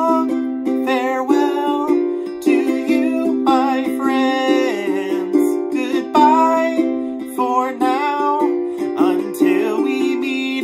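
Fender ukulele strummed in steady chords, with a man singing a slow melody along with it.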